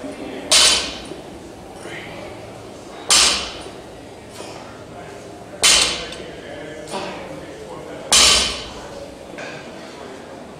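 Loaded barbell with bumper plates set down on a rubber gym floor between deadlift reps: four thuds with a clink, about two and a half seconds apart, with fainter knocks between them as the bar leaves the floor.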